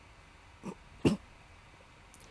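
A man clearing his throat: two short sounds about half a second apart, the second louder.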